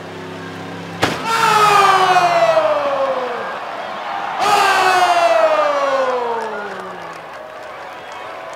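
Pickup truck engine with a bang about a second in as it hits the barrels, then the engine revving high and falling away in pitch over a couple of seconds, twice.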